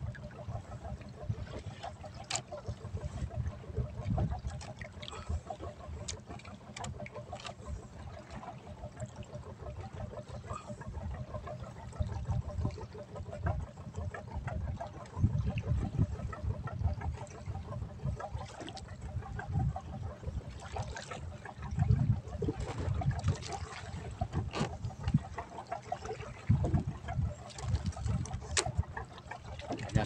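Wind buffeting the microphone in uneven gusts over water sloshing against the hull of a small boat at sea.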